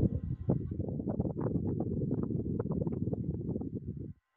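A burst of low rumbling noise scattered with crackles, starting and stopping abruptly after about four seconds.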